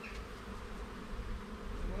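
Honey bees buzzing steadily around an opened hive.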